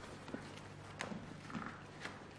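Footsteps: a few separate steps about two-thirds of a second apart, the strongest about a second in.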